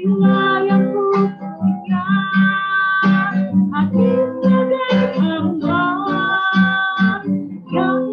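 A woman singing an Indonesian worship song in long held notes, accompanied by steadily strummed acoustic guitar.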